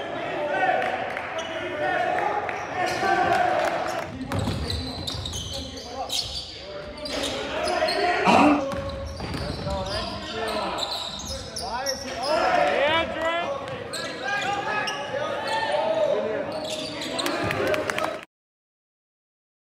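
Live basketball game sound in a gym: a basketball bouncing on the hardwood court, sneakers squeaking, and indistinct shouts from players and spectators. The clip is made of several short cuts, so the sound shifts abruptly a few times.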